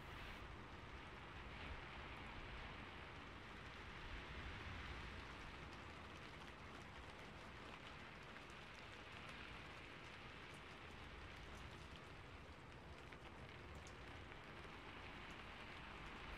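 Near silence: a faint, steady hiss with occasional tiny ticks.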